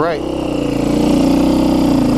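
KTM 530 EXC-R single-cylinder four-stroke dual-sport motorcycle engine running under way at a steady pitch, getting gradually louder.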